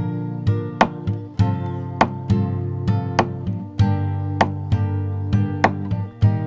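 Nylon-string acoustic guitar, capoed at the third fret, strummed through a G, D, E minor, C progression in a percussive pattern of strums alternating with thumb strikes on the strings: sustained chords broken by sharp, regular slaps in a steady rhythm.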